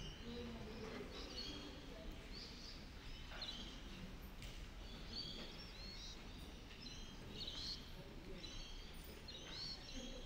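Faint birdsong: short, high chirps repeating every second or so, over a low, steady room hum.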